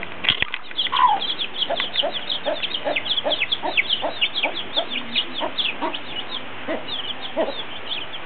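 Baby chicks peeping continuously in short, high, falling notes, while a mother hen clucks in a steady rhythm of about three clucks a second. A single knock near the start.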